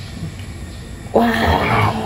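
Quiet room tone, then about a second in a voice exclaims "wow".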